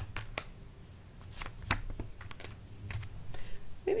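A deck of tarot cards being shuffled and handled by hand, giving irregular sharp flicks and taps of card stock.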